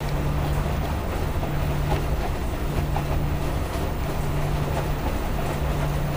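Front-loading washing machine running: water sloshing as the drum tumbles, over a low motor hum that breaks off now and then.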